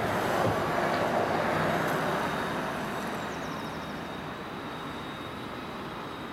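Ambulance driving away slowly, its engine and tyre noise fading steadily.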